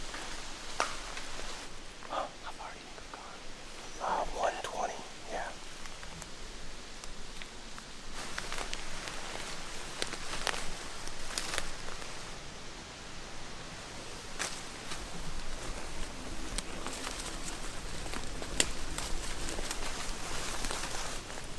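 Footsteps crunching and rustling through fallen leaves on a forest floor, with scattered sharp snaps and cracks of twigs. Low whispering comes in briefly about four seconds in.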